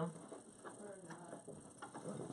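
Faint rustling and a few scattered clicks from a black bag being handled right against the camera.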